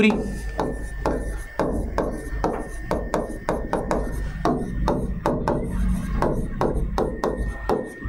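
Stylus tapping and scratching on the glass of an interactive display panel while words are handwritten: an irregular run of small clicks and short rubbing strokes. A faint steady high tone and a low hum run underneath.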